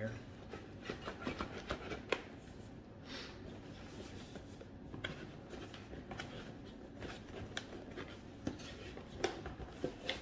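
Cardboard product box being handled and pried open: soft rubbing and scraping of cardboard with scattered light taps and clicks.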